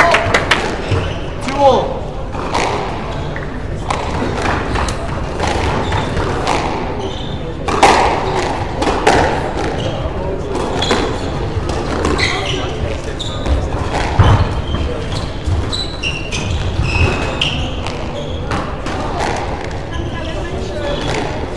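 A squash ball being struck by rackets and smacking off the walls of a reverberant court: a run of sharp knocks at uneven intervals, loudest about eight and fourteen seconds in. Voices can be heard in the background.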